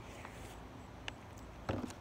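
Faint background hiss with two short, faint knocks, about a second in and again near the end, from a plastic water bottle being handled and set behind the recording phone.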